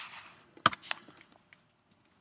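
Computer keyboard keys: one sharp, loud keystroke about two-thirds of a second in, then a softer one, with a few faint taps after. This is the Enter key being struck to run a typed npm install command.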